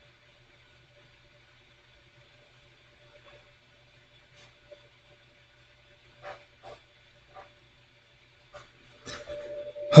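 Quiet room tone with a steady faint electrical hum and a few faint short taps or clicks, then a man's voice at the very end.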